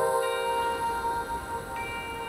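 Soft background music with a bell-like struck note ringing out and slowly fading under steady held tones.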